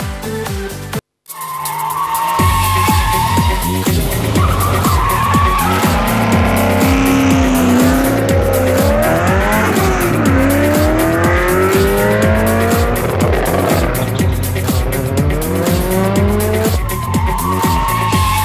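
Music with a steady beat, cut off by a brief silence about a second in. Then the racing-show jingle begins: music mixed with race-car engine sounds that rise and fall in pitch as the car revs, and tyre squeals.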